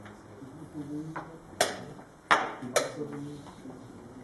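A faint tap, then three sharp knocks in quick succession in the middle: wooden chess pieces set down on a wooden board and the chess clock's button being struck in fast blitz play.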